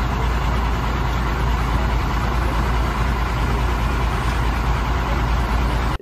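Fire truck engine idling with a steady low running sound.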